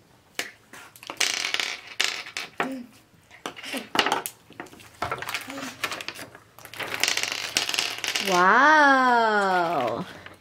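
Paper and a plastic candy wrapper rustling and crinkling with small clicks as a worksheet is picked up and held out. Near the end, a long drawn-out vocal exclamation rises and then falls in pitch, louder than the handling noise.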